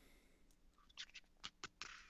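Near silence over a video call, with a handful of faint short clicks from about a second in.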